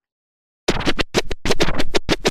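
Short electronic music sting with rapid scratch-like stutters, starting suddenly about two-thirds of a second in after silence.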